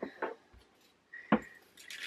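A few faint clicks and one sharper tap about a second and a half in, from a small plastic bag of crystal rhinestones being handled on a table.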